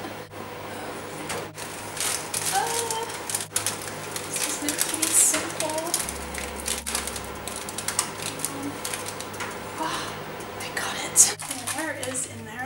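Irregular light metallic clicks and knocks of a cake tin being drawn out of an oven on its wire rack and set down on a gas hob, with the rustle of a tea towel and a voice murmuring now and then.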